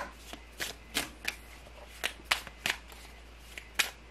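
Tarot cards being shuffled and handled by hand, a run of short, sharp, irregular snaps.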